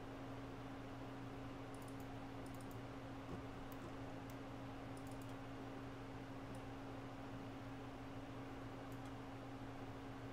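Faint, scattered clicks of a computer mouse and keyboard, about ten of them, bunched in the first half, over a steady low hum.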